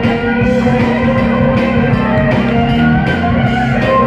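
Live rock band playing with electric guitar, bass, keyboards and drums.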